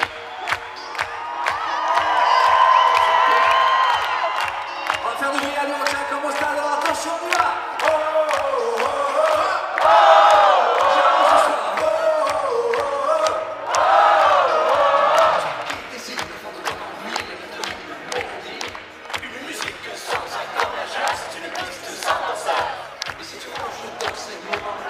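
Live dance-pop concert music played loud through an arena PA, with a steady dance beat and voices of singers and crowd singing and shouting over it. The voices swell loudest about two, ten and fourteen seconds in.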